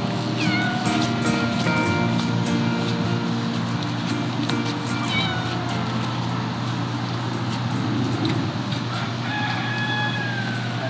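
Cats meowing a few times, about half a second in, around five seconds and again near the end, over steady background music.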